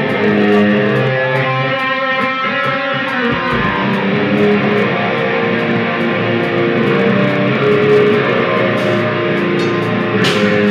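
Live rock band playing loud: electric guitar over bass guitar and a drum kit, with steady cymbal strikes.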